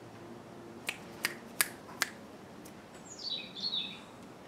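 Four sharp clicks about a third of a second apart, then near the end a short bird call of quick chirps falling in pitch.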